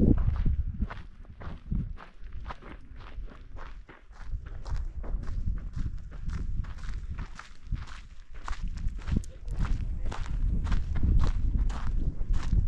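Steady crunching footsteps on a gravel and dirt road, with gusts of wind rumbling on the microphone, heaviest at the start and near the end.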